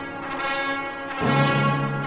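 Baroque festive brass music led by trumpets, holding long sustained chords. A fuller chord with a strong low note comes in a little past halfway.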